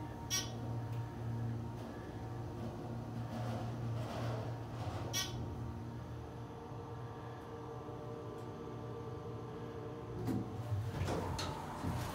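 Hydraulic elevator's pump motor running with a steady hum as the car travels up. There is an occasional click, and a few clicks and squeaks near the end as the car stops and the doors open.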